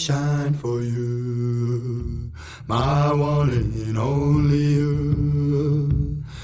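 A man's voice singing long, drawn-out notes, in two phrases with a brief break about two seconds in.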